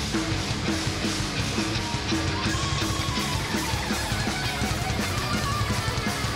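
Heavy metal band playing live in an instrumental passage: distorted electric guitars, bass and drums, with a riff of repeated picked notes.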